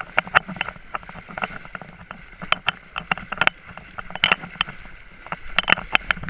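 Horses wading through shallow water, their legs splashing at an irregular pace of a few splashes a second.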